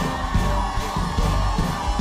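Upbeat worship-band music with a driving bass beat and sustained keyboard tones, with the congregation's voices faintly under it.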